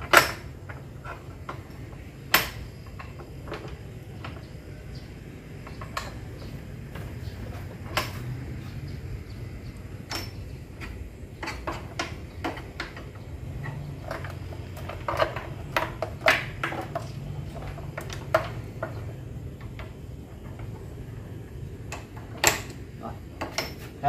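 Metal rigging hardware on PSD speaker cabinets clicking and clanking as the cabinets are fitted together and stacked: scattered sharp metallic knocks of brackets and pins, loudest at the very start, about two seconds in and near the end.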